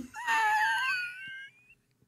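A man's high, squealing laugh held for about a second and a half, fading out.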